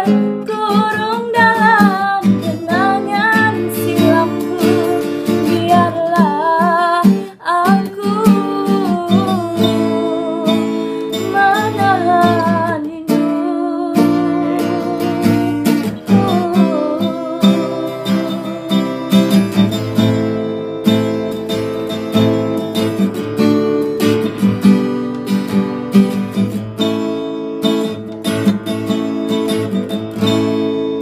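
Live acoustic cover of a Malay pop ballad: a woman singing, with a man joining in, over a strummed acoustic guitar. The singing is strongest in the first half; after about fifteen seconds the guitar chords carry more of the sound.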